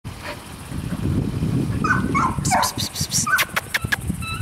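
A dog giving a few short whines and yips from about two seconds in, over a low rumbling noise, with a quick run of sharp clicks in the last second and a half.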